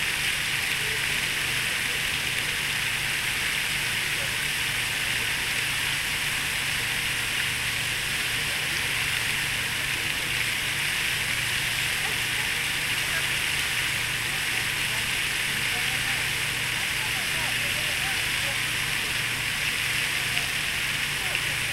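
A large fountain's tall water jet splashes steadily into its basin, a continuous even rush of water.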